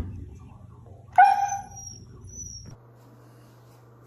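A husky gives one short pitched vocal call, a whine-like sound, about a second in.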